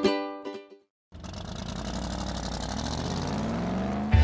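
Ukulele jingle music fading out, then a moment of silence. After that comes a rising swell that builds for about three seconds, a transition sound leading into a television show's title music.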